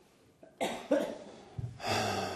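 A person coughing, two short coughs about a third of a second apart, then a long breathy sigh beginning near the end.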